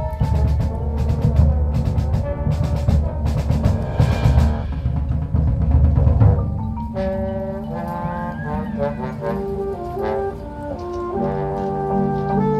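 High school marching band playing its field show. For the first four seconds or so, loud percussion hits sound over low brass. From about six seconds in, the percussion drops away and the winds carry a melody of held notes.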